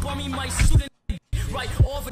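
Excerpt of a hip hop song: a male voice rapping over a beat. The audio cuts out abruptly for a moment about a second in, then resumes.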